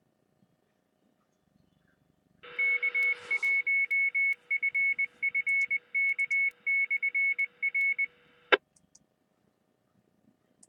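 Amateur radio repeater's Morse code station ID heard over a receiver: the signal opens with a brief rush of hiss, then a single high tone keys out long and short beeps for about five seconds, and it cuts off with a squelch click near the end.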